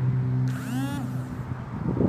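A vehicle passing close by, its sound sweeping down in pitch from about half a second in, over a steady low hum that fades out partway through.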